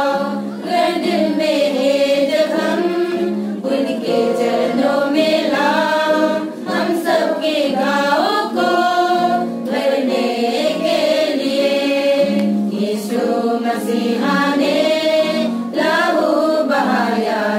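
A women's church choir singing a hymn together from hymnbooks, in sung phrases with brief pauses between them.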